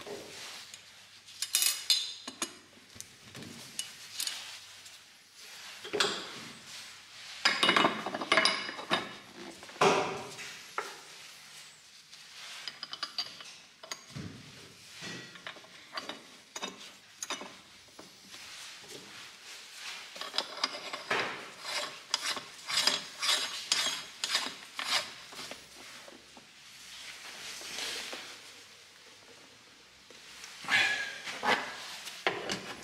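Knives and metal utensils clicking, clinking and scraping while a wild boar carcass is cut up. The sounds come at irregular intervals, with a quicker run of clicks about two-thirds of the way through.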